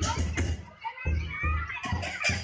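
Lion dance drum beating a steady, fast rhythm, about three strokes a second, with cymbal clashes over it.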